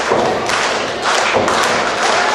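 Several heavy thuds of wrestlers hitting the ring in quick succession.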